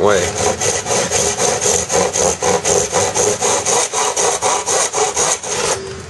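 Fine-toothed hand miter saw cutting through a carbon fiber bicycle seatpost in a plastic miter box, with quick, even back-and-forth strokes that stop shortly before the end. The saw is making a nice smooth cut.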